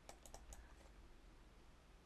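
Near silence, with a few faint clicks in the first half second.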